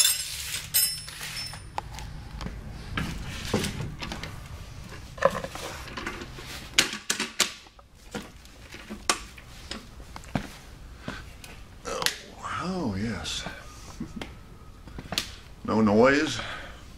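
A dinette chair with a freshly rebuilt swivel-tilt mechanism being handled, turned upright and sat in: scattered knocks, clunks and rustling, with a brief pitched creak-like sound about two-thirds of the way through.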